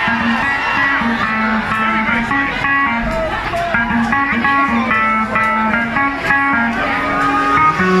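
Live band music with quick plucked guitar notes over a steady rhythm, played loud and recorded from within the audience.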